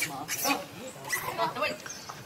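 A person speaking a few words of Vietnamese, mixed with short, high animal calls about half a second in and again near the end.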